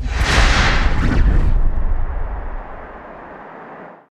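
A whoosh-and-rumble sound effect like a burst of flame, loud at first with a deep rumble under it. After about two and a half seconds it fades into a fainter hiss, which cuts off just before the end.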